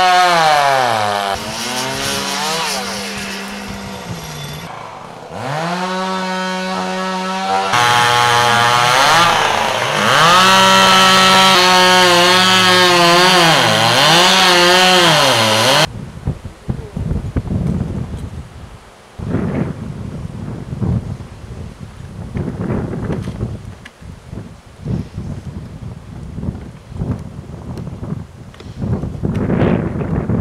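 Chainsaw revving up and down in several bursts, its pitch rising and falling, until it cuts off suddenly about halfway through. After that, gusty wind noise on the microphone.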